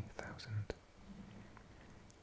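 A man's soft whispering in short, quiet fragments, with a single click a little under a second in, followed by a faint low hum.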